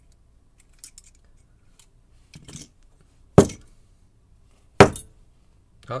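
Metal euro cylinder lock being knocked and shaken to free a pin stuck down in its fifth chamber. A few faint metallic clicks are followed by two loud sharp knocks about a second and a half apart, and a lighter click near the end.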